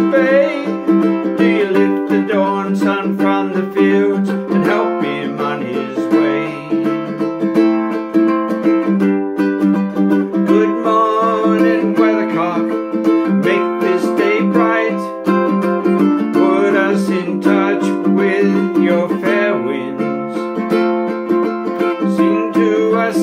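Ukulele strummed in a steady rhythm, playing the chords of a song.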